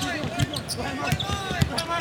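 Basketball bouncing on a hardwood court during live play: several short, sharp bounces over general arena noise.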